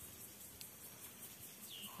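Faint outdoor background with a steady hiss, and a single short high chirp near the end.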